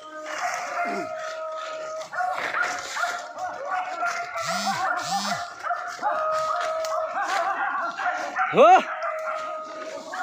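A dog barking a few short times, the loudest a sharp yelp near the end, over a steady high-pitched drone.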